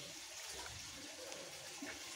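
A steady, faint hiss with no distinct events.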